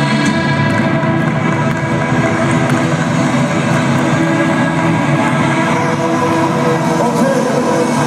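Rock band playing live in an arena: loud, steady music with sustained chords.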